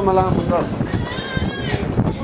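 A young child's high-pitched voice: a short wavering call, then about a second in a shrill, wavering squeal lasting nearly a second.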